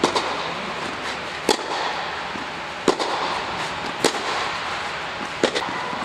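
Tennis balls struck with rackets in a rally, five sharp hits about one every second and a half, with a short echo inside an inflated tennis dome.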